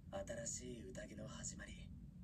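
Faint speech: dialogue from an anime episode playing quietly in the background.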